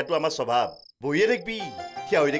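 A man speaking, with a cricket chirping in short, high, steady trills behind him.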